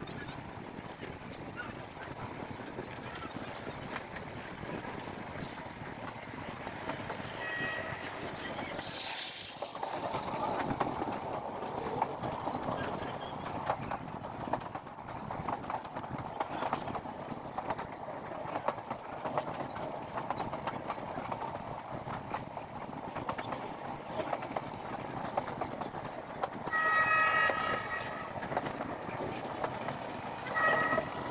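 A passenger train coach running, heard from its open doorway: a steady rumble and rattle with wheels clicking over rail joints and points, and wind noise. Brief high-pitched tones sound twice, once about eight seconds in and once near the end.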